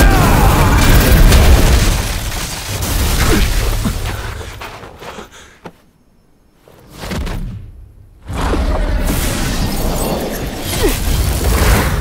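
Sound-effect booms and deep rumbling impacts from an animated fantasy battle, with stone shattering and crumbling. A loud boom opens and fades to a brief lull about halfway, then the rumble builds again and peaks near the end.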